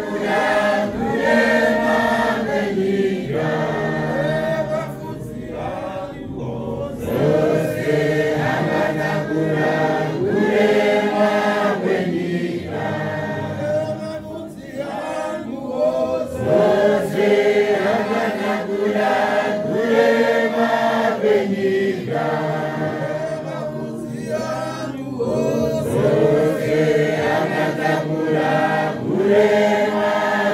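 A congregation of men and women singing a hymn together a cappella, in phrases with brief breaks every few seconds.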